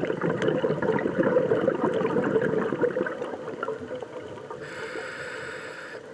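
A scuba diver's exhaled bubbles gurgling and crackling out of the regulator for about three to four seconds, easing off, then a hiss near the end as the next breath is drawn through the regulator.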